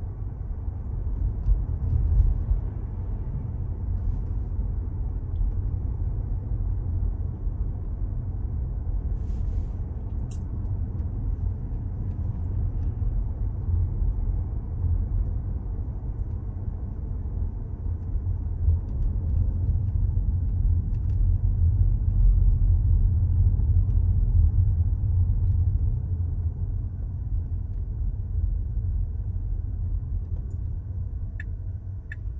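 Steady low road and tyre rumble inside the cabin of a Tesla electric car while it drives, with no engine note, growing a little louder about two-thirds of the way through.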